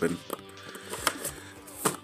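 Cardboard action-figure box being cut and pried open: a few scrapes and clicks of the cardboard, the loudest near the end.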